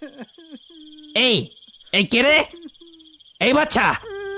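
Crickets chirping steadily as a night ambience, under three short voice calls, the first a shout of "ei" ("hey").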